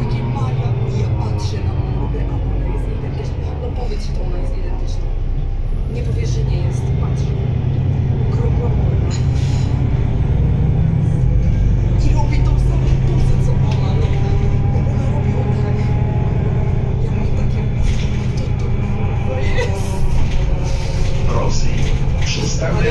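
Solaris Urbino 12 III city bus heard from inside the passenger cabin: the Cummins ISB6.7 six-cylinder diesel and ZF EcoLife automatic gearbox run with a steady low drone, and a higher whine glides up and down in pitch as the bus changes speed.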